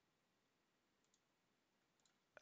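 Near silence: a muted, empty sound track.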